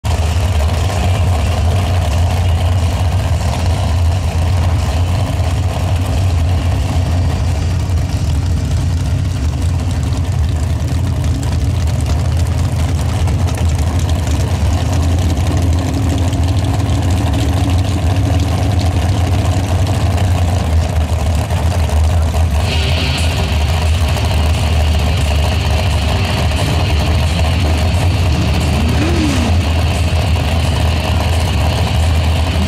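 Mud drag racer's engine idling at the start of the mud pit, a loud, steady low rumble. A higher hiss joins about three-quarters of the way through.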